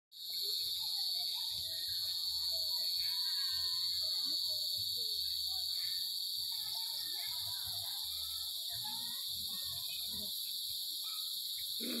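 Steady, high-pitched drone of an insect chorus, with faint scattered chirps beneath it. Right at the end, a puppy starts to whine.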